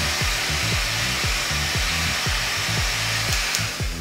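Hand-held hair dryer blowing steadily, a constant airy hiss. Background music with a steady beat runs underneath.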